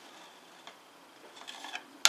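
Quiet room tone with a single faint tick about a third of the way through.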